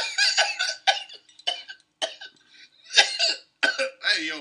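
A man laughing in short, breathy, wheezing bursts that sound like coughs, about eight of them with a pause midway.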